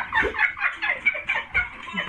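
Women's high-pitched cackling, a quick run of short sliding yelps about five a second, wild enough to sound like squawking fowl.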